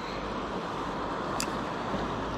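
Steady rush of a shallow river running over stones, with a single faint click about one and a half seconds in.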